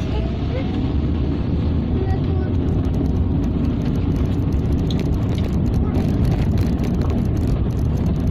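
Inside a moving car's cabin: the engine and tyres give a steady low rumble while driving slowly over a rough, patchy country road.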